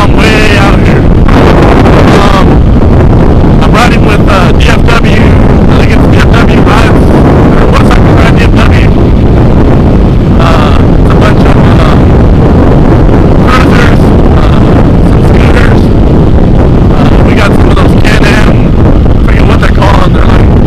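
Loud, distorted wind buffeting on the microphone of a riding dirt bike, with the Yamaha WR450F's engine beneath it at road speed.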